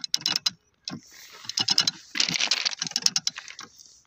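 Hand-operated ratchet rail drill working a bit into a steel rail's web: quick runs of sharp metallic ratchet clicks as the lever is worked back and forth, with a short pause about half a second in and busier clicking from about a second on.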